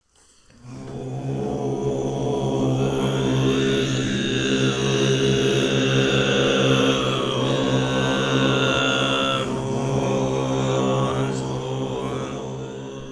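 Chanted mantra music: a deep, held vocal drone on one low note with rich overtones, fading in over the first second or two.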